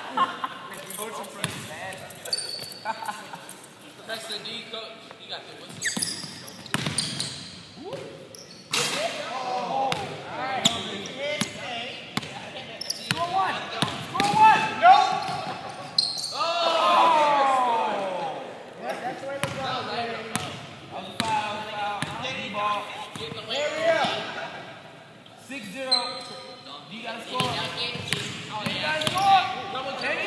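Basketball bouncing on a gym floor during a game, a series of irregular sharp strikes, with voices calling out in the echoing hall.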